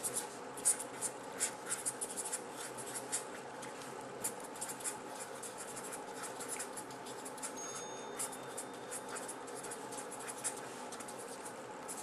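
Handwriting: a pen scratching out quick strokes, in runs with short pauses, over a faint steady hum.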